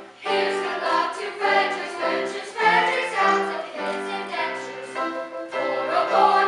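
Children's chorus singing an opera number, starting again just after a brief gap at the very start.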